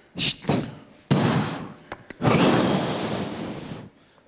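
Two short hissed sounds near the start, then the audience breaks into applause twice: a sudden burst about a second in that fades, and a longer burst from just past halfway until near the end.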